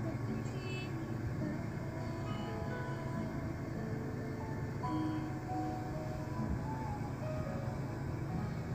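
Steady low rumble of a car cabin, with quiet music playing over it, its held notes wavering.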